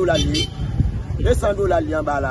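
A man speaking in Haitian Creole over a steady low rumble.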